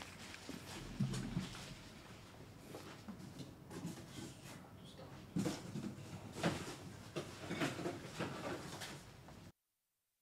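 Faint scattered knocks and handling noises in a quiet small room, as headphones are taken off, a chair is left and someone moves about. The sound cuts to dead silence briefly near the end.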